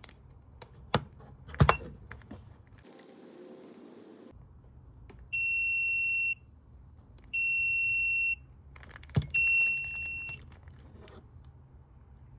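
A plastic click as the filament splicer's heater cover is closed, then three long, high, even electronic beeps from the splicer, each about a second long and spaced about two seconds apart, while the filament joint sits in the heater.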